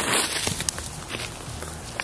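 Hands working soil and dry straw mulch around a seedling as it is set into the ground and firmed in: a rustling, crunching handling noise with a few small clicks.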